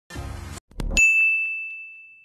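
A single high, bell-like ding about a second in, struck sharply and then ringing on as one clear tone that fades away: an edited-in chime sound effect. Just before it there is a brief faint rustle and a click.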